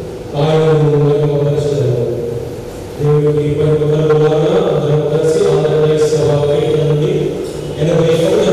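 A man singing a slow Telugu hymn into a microphone in long held notes. Phrases start just after the beginning and again about three seconds in, with a short break near the end.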